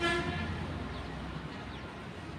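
A vehicle horn honks once, briefly, then a steady low rumble continues.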